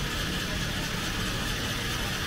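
A motor running steadily, a low hum under an even hiss.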